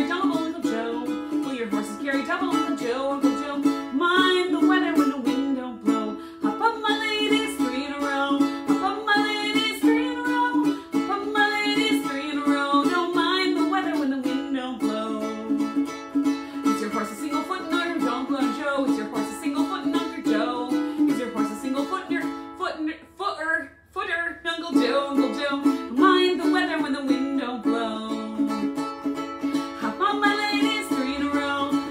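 A ukulele strummed in a steady rhythm while a woman sings a traditional square-dance tune. The playing breaks off briefly about two thirds of the way through.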